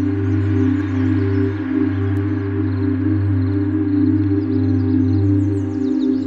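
Ambient meditation music: a sustained drone of held low tones, the lowest one swelling and fading slowly about every second and a half, with a soft brighter wash above. Faint, short high chirps come in near the end.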